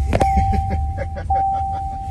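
Seat-belt reminder tone in a Waymo Jaguar robotaxi: a steady high tone held about a second at a time with short breaks, over low cabin rumble. A sharp click comes just after the start.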